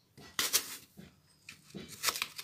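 A kitchen knife cutting through a fresh apple: crisp, rasping slicing strokes, one loud cut about half a second in and a few softer ones after it.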